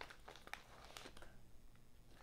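Near silence with faint crinkling of a plastic-wrapped trading card pack and cards being handled as a stack is pulled out, a few soft ticks in the first half second.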